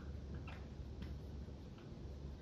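Dry-erase marker writing on a whiteboard: faint, short squeaks and taps of the felt tip, a few each second at irregular spacing.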